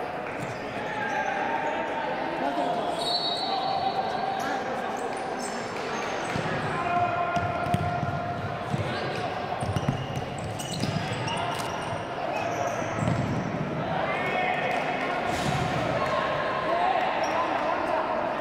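A futsal ball being kicked and bouncing on the wooden court of a large, echoing sports hall, with players' voices calling during play.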